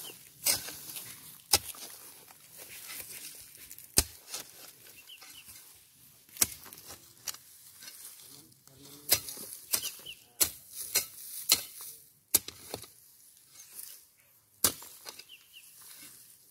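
A long-handled hoe chopping into soil and grass, about ten sharp strikes at an uneven pace a second or two apart, with soft scraping as the soil is pulled in around a young pepper vine's base.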